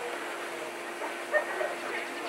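Steady low hum over a hiss, with a short voice-like sound about one and a half seconds in.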